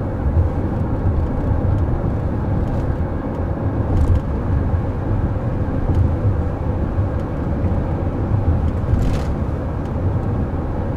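Road and tyre noise inside the cabin of a Chrysler Pacifica minivan driving along a city road: a steady low rumble with a faint steady hum. Two brief faint clicks or rattles come about four and nine seconds in.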